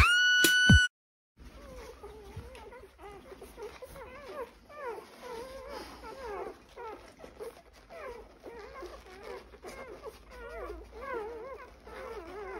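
A loud steady tone for about the first second, then a short silence. After that, newborn puppies whimper over and over in short, wavering high cries.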